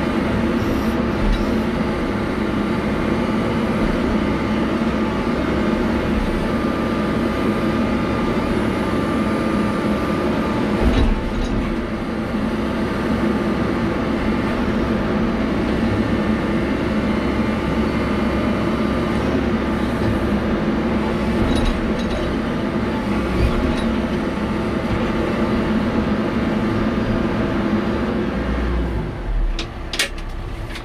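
Caterpillar 420F IT backhoe loader's diesel engine running steadily under hydraulic load while the backhoe arm is worked. The sound falls away near the end.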